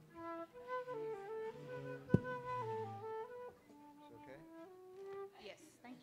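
A flute playing a short phrase of held notes that step up and down, then fading to softer notes. A single sharp knock about two seconds in.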